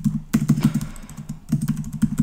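Keys being typed on a computer keyboard, in two quick runs of keystrokes: one just after the start and another about one and a half seconds in, with a short lull between.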